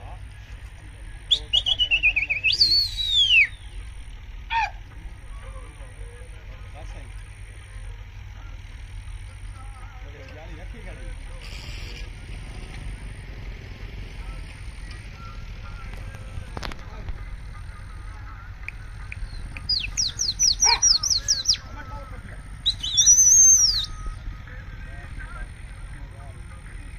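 Birds calling in loud whistles: a long whistle that falls, rises and falls again near the start, a rapid trill of high notes about twenty seconds in, and a high rising-then-falling whistle soon after. A steady low rumble runs beneath.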